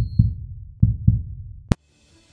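Intro music sting of deep thumps in pairs, two pairs about 0.8 s apart, ending in one sharp click near the end and then a moment of silence.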